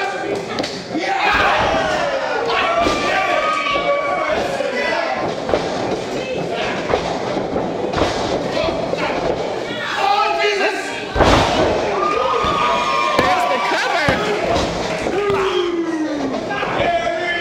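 Thuds and slams of wrestlers hitting a wrestling ring's mat, the loudest about eleven seconds in, with people shouting over them.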